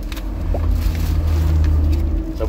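Toyota Sequoia's engine idling, heard inside the closed cabin as a steady low drone that grows slightly louder about half a second in.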